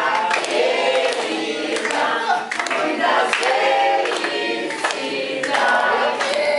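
A group of adults and children singing a birthday song together, clapping along in a steady rhythm.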